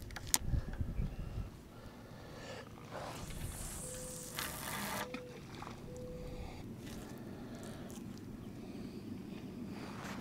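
Handling noise from a fishing rod and spinning reel: a sharp click and a run of knocks in the first second or so, then a hiss lasting about two seconds, over a low steady background.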